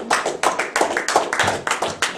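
Applause: hand clapping in a quick, uneven run of claps.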